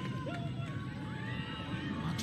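Crowd ambience at a lacrosse game as heard on the broadcast: a steady low murmur with faint, distant calls and shouts rising and falling.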